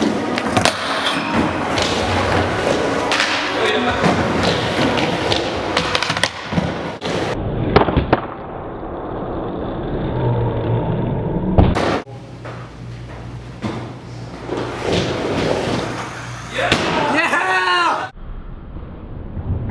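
Skateboard wheels rolling on wooden ramps, with knocks and clacks of the board hitting the ramp, under background voices. The sound changes abruptly twice, about seven and twelve seconds in.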